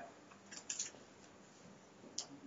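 Quiet room tone with a few faint, short clicks a little under a second in.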